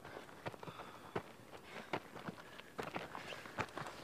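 Footsteps of several people walking up a stony dirt mountain path: faint, irregular crunches and scuffs of boots on gravel and rock.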